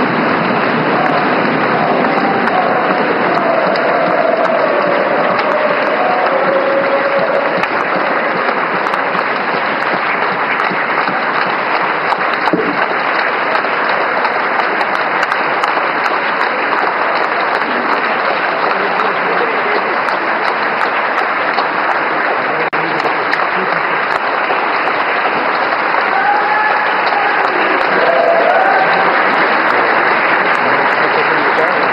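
A large crowd of parliamentarians clapping continuously in a big hall, with a few voices calling out above the applause near the start and again near the end.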